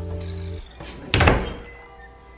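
Pantry door pushed shut, closing with a single thunk a little over a second in.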